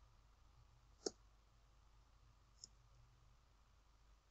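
Two short clicks of a computer mouse against near silence, the first about a second in and a fainter one a second and a half later, advancing a presentation slide.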